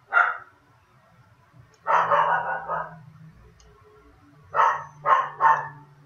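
Pet dog barking in the room: one short bark at the start, a longer bark about two seconds in, and three quick barks in a row near the end.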